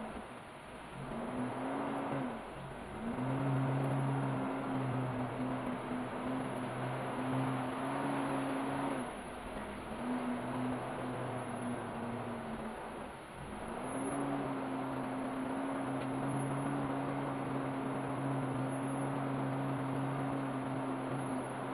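A 4x4's engine running at a low, steady speed with tyre and cabin noise over a dirt track. The engine note eases off and picks back up three times.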